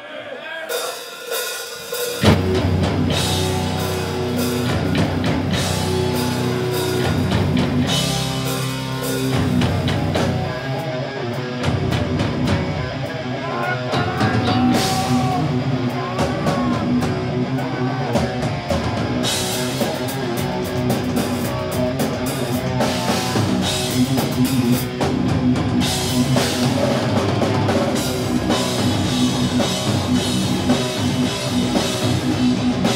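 Death metal band playing live at full volume, drums, electric guitar and bass. The song kicks in abruptly about two seconds in.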